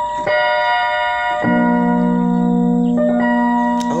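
Electronic keyboard playing held chords in a piano-like voice. A chord sounds in the right hand, low left-hand notes join about one and a half seconds in, and the chord changes near three seconds: a demonstration of chord inversions in the key of F.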